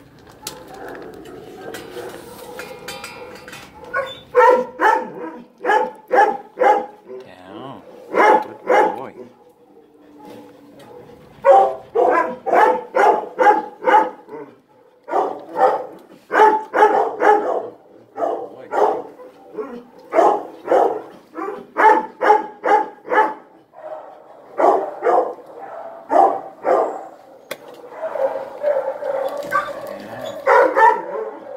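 Dogs barking repeatedly in a shelter kennel, in runs of short barks about two to three a second with brief pauses between runs.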